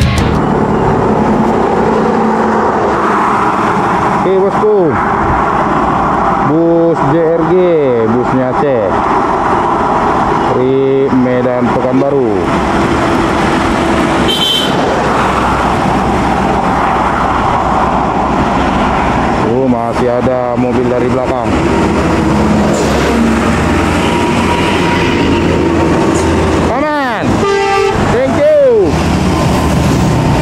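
Highway traffic with buses and trucks driving past, engines running, while horns sound about five times, their pitch rising and falling. A short high beep comes about halfway through.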